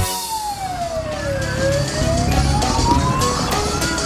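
Fire engine siren wailing in one slow sweep: it falls in pitch for about a second and a half, then rises steadily again, over low engine rumble.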